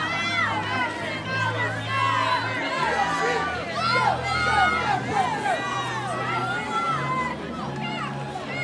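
Spectators at a swimming race shouting and cheering swimmers on, many voices overlapping, with low bass notes of music underneath.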